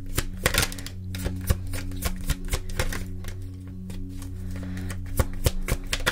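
A deck of tarot cards being shuffled by hand: a run of irregular sharp clicks and taps. Soft background music with steady held tones plays underneath.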